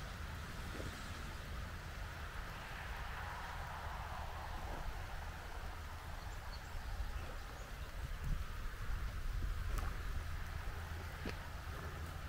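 Wind buffeting the microphone as a low, uneven rumble over a faint steady background hiss, swelling slightly past the middle, with a few light clicks near the end.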